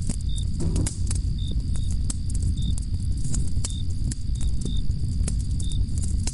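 Night forest ambience sound effect: crickets chirping, with a steady high trill and short chirps about every half second, over a low rumble and scattered sharp crackles of a campfire.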